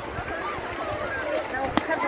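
Indistinct voices of people talking and calling out, quieter than close speech, with a single sharp click near the end.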